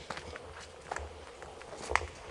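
Footsteps on a dirt path, two clear steps about a second apart, over a faint steady hum.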